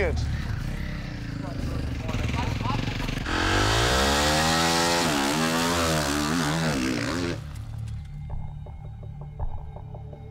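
A factory KTM four-stroke motocross bike idling, then revving hard about three seconds in as it launches and pulls away, its pitch climbing and dropping with the gear changes. The engine sound cuts off suddenly near the end and a quieter low hum remains.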